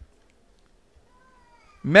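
A pause in a man's preaching that is near silent apart from a faint, brief, slightly rising tone in the middle. His amplified voice comes back in just before the end.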